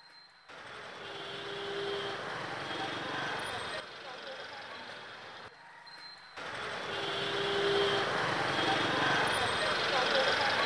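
City street traffic: a steady wash of vehicle noise with voices mixed in. It drops out for about a second midway, then returns.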